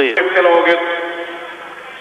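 A male television commentator speaking in Russian over an ice hockey broadcast, his voice held in a long drawn-out word that trails off toward the end.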